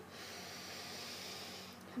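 A woman drawing one long, deep breath in, lasting nearly two seconds: the in-breath of a deep-breathing exercise.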